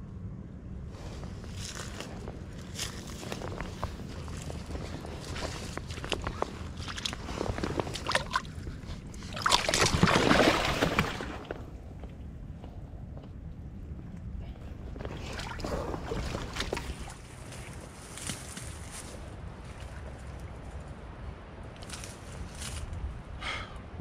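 Rustling steps through dry leaves and brush at a shoreline, with a snakehead splashing in shallow water for about two seconds around ten seconds in as it is put on a stringer.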